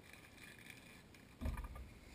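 Quiet hand work at a fly-tying vise: faint rustling of thread and materials, then a single dull thump about one and a half seconds in.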